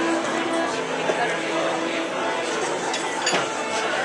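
Background music playing over the indistinct chatter of many voices in a crowded room.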